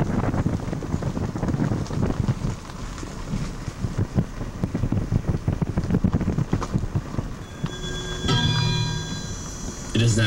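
Wind buffeting a camcorder's built-in microphone: an uneven low rumble in gusts with sharp irregular pops. A few steady tones come in about eight seconds in.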